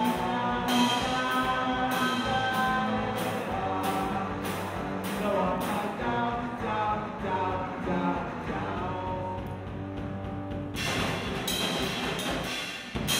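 Live punk-rock band playing: two electric guitars over a drum kit with regularly struck cymbals. The cymbals thin out about two-thirds of the way through, leaving the guitars ringing, then the drums crash back in loudly near the end.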